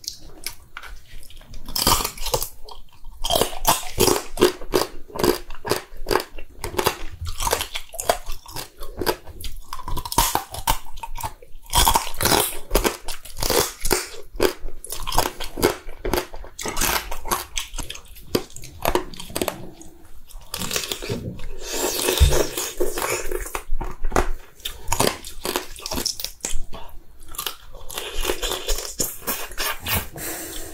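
Close-miked chewing and biting of soy-sauce-marinated raw crab, with wet crunching and cracking as the shell is chewed, irregular and continuous.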